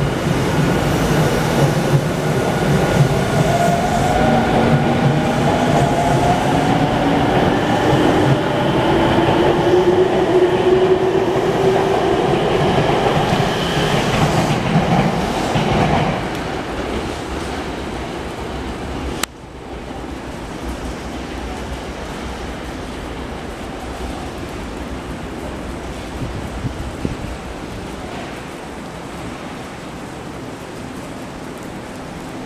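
Electric train pulling out of the station: its motors give several rising whines over the rumble and clatter of the wheels. About sixteen seconds in the sound drops away, and after a sharp click a little later only a quieter steady noise remains.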